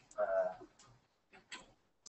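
A brief, faint voice about half a second long near the start, then quiet with a couple of faint ticks.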